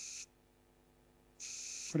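Two short hisses of gas jetting from a spray can: the first ends about a quarter second in, the second starts about a second and a half in.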